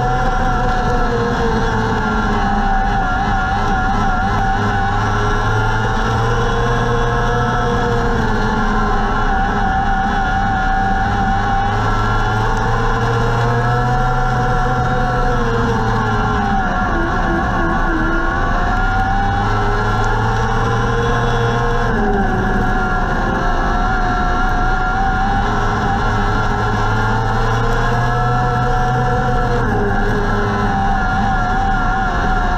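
Micro sprint car engine heard from the in-car camera, running hard under race load. Its pitch rises and falls every few seconds as the car laps the dirt oval.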